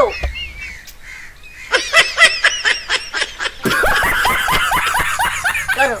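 High-pitched laughter in a string of short bursts, starting about two seconds in and growing denser and louder for the last couple of seconds.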